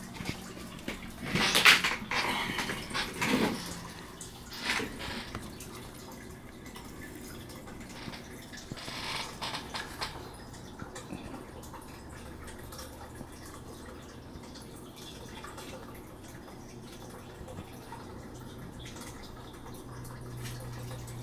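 Handling noises: rustling and scraping for the first few seconds and again around nine seconds, then a steady faint background hum.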